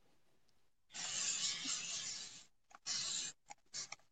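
A spray bottle squeezed while nearly out of water, hissing in a long burst and then sputtering in a shorter burst and a few brief puffs.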